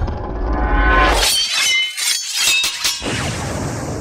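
Dramatic music, with a cluster of sharp crashing, shattering hits with bright ringing about a second and a half in: fight sound effects as a figure is smashed apart.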